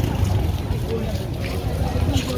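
Busy street at night: indistinct voices of nearby people over a steady low rumble.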